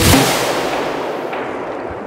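A sudden booming hit from a dramatic sound effect. Its noisy tail fades away over about two seconds.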